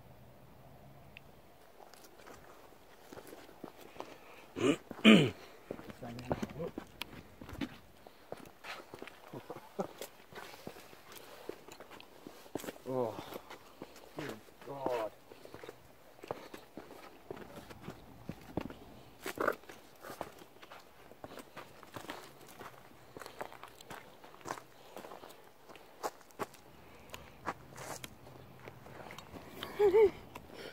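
Footsteps of people walking, a run of soft, irregular steps, with a few brief, faint voice-like sounds among them, the loudest about five seconds in.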